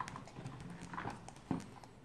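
Small plastic toy egg handled in the fingers close by: a few soft clicks and taps, the sharpest about one and a half seconds in.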